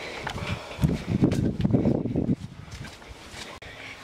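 Handling noise from a large, heavy cardboard box being carried on the shoulder. A run of irregular rustles and knocks lasts about a second and a half from about a second in, then it goes quieter.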